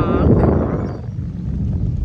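Wind buffeting the phone's microphone: a heavy, uneven low rumble that dips briefly about halfway through. A voice trails off right at the start.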